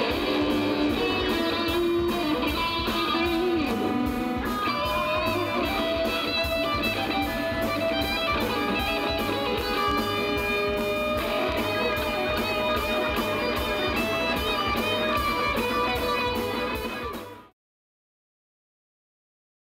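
Live instrumental rock-frevo: electric guitars play melodic lead lines over drums and bass with a steady beat. The music stops abruptly near the end.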